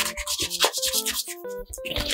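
Hands rubbing and rustling a sheet of paper in a quick series of short strokes.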